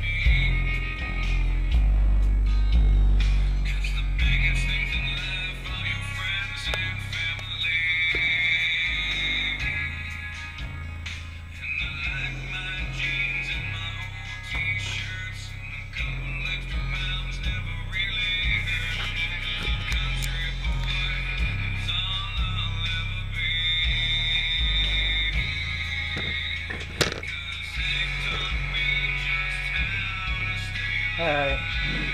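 Rock music with a heavy bass line played through a pair of Massive Audio Hippo XL64 subwoofers. The bass notes step about once a second, and a small midrange speaker carries the upper part in a narrow, screechy band.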